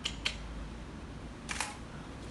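Camera shutter clicks: two quick clicks at the start and another about a second and a half in, over faint room hum.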